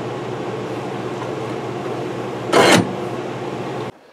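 A steady machine hum with a low drone. A short, sharp rushing noise comes about two and a half seconds in, and the hum cuts off suddenly just before the end.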